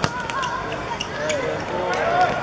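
A football kicked hard once at the start, a sharp thud, followed by a few lighter taps of ball and shoes on the artificial turf. Players and onlookers are calling out under it.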